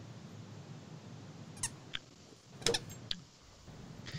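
A quiet pause: low steady hiss of room tone and microphone noise, with a few faint short clicks and squeaks between about one and a half and three seconds in.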